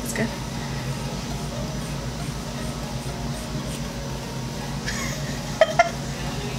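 Hairdressing shears cutting through a thick lock of long hair: a few short, crisp metallic snips a little before the end, over a steady low room hum.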